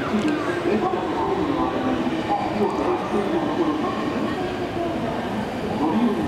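Station platform sound: a train running nearby, steady and continuous, with people's voices mixed in.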